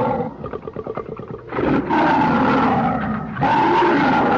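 Film monster roars: a lower rattling growl, then a long, loud, pitched roar from about a second and a half in, and another roar near the end.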